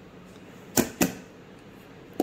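An upturned metal cake tin knocked twice against a steel plate, two sharp metallic taps about a second in, a quarter second apart, to loosen the steamed sweet from the tin.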